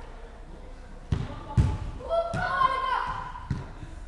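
A football being kicked and bouncing on an indoor pitch: four thumps, the loudest about a second and a half in. A child shouts between about two and three seconds in.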